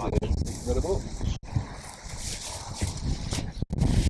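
Low rumbling noise on an outdoor camera microphone, with brief snatches of indistinct voice.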